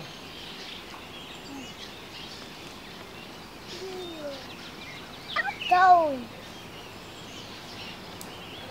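Steady outdoor background hiss, broken about five and a half seconds in by a young child's drawn-out "oh" falling in pitch, the loudest sound here, with a softer falling vocal sound shortly before it.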